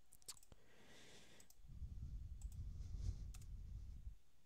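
Computer mouse and keyboard clicks while a search is entered: a few sharp clicks near the start and two more later on. A soft hiss comes around the first second, and a low rumble fills the second half.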